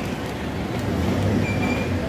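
Street traffic noise: a steady low rumble of vehicle engines running close by, with a brief high-pitched tone near the end.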